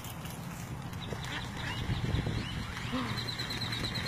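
Wind rumbling on the microphone with scattered high chirps. About three seconds in, a fast run of short, high peeps begins, about eight a second, from ducklings in the water.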